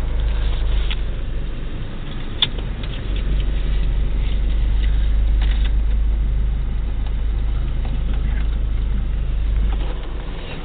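Car cabin noise while riding: a steady low rumble of engine and road heard from inside the car, with one sharp click about two and a half seconds in.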